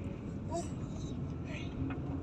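Steady low rumble inside a moving car's cabin, with a few short, faint voice sounds over it.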